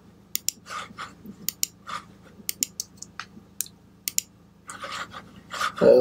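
Scattered, irregular clicks and taps of a computer keyboard and mouse, about a dozen over the few seconds.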